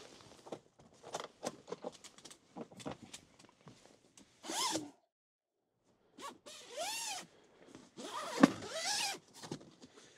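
A rooftop tent's fabric zipper pulled in three long strokes, about four and a half, seven and eight and a half seconds in, after a run of small clicks and fabric rustles.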